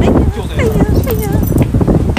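A man's voice talking loudly in short phrases.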